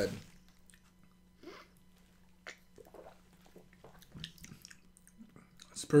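Faint mouth sounds of sipping and swallowing a melon-flavoured soda, with a few small scattered noises and one sharp click about two and a half seconds in.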